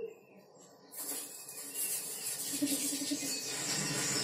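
Television soundtrack heard in a small room: quiet for about a second, then a steady hiss with a few faint low notes.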